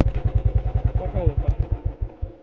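Royal Enfield Bullet's single-cylinder engine idling with a rapid, even low thump.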